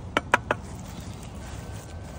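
Three quick, sharp taps about a fifth of a second apart near the start, then a low, steady background.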